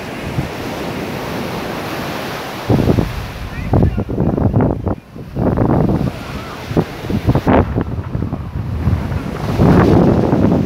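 Surf washing onto a sandy beach under a steady wind. From about three seconds in, the wind buffets the microphone in heavy, irregular gusts.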